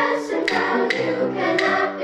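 Intermediate school chorus singing a children's song in unison, with instrumental accompaniment that marks a steady beat.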